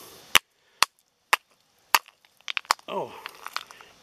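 Chunks of quartzite rock knocked together by hand: four sharp clacks about half a second apart, then a quick run of lighter clicks as the brittle rock breaks.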